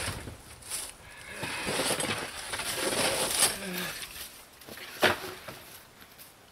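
Wooden pallet boards being handled and shifted by hand, knocking and scraping against each other, with a sharp knock at the start and another about five seconds in.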